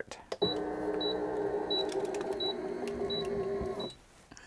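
HTVront Auto Tumbler Press's motor running steadily for about three and a half seconds as its heated chamber clamps shut around a glass can at the start of a press cycle, stopping abruptly just before the end. A short high beep sounds about every two-thirds of a second while it closes, and a click comes just before the motor starts.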